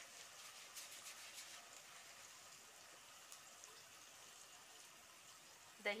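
Faint sizzling of minced meat (keema) cooking in an aluminium pot over a gas burner, with yogurt just stirred in. A few soft crackles in the first second or so, then a steady faint hiss.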